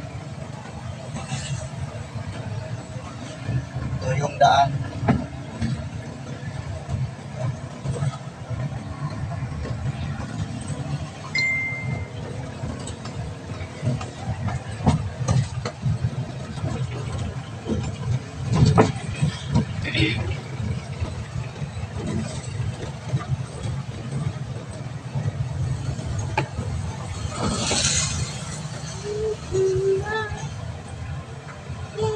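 Vehicle driving along a road, heard from inside the cab: a steady low engine and road rumble. A short high beep comes about a third of the way in, and a louder hiss lasting about a second comes near the end.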